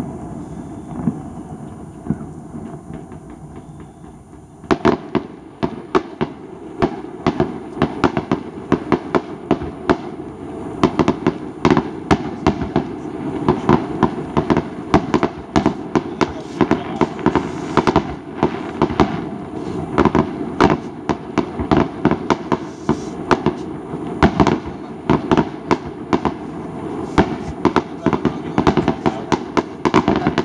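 Fireworks display: shells bursting overhead. A dying rumble for the first few seconds, then from about five seconds in a rapid barrage of sharp bangs and crackles, several a second, with no let-up.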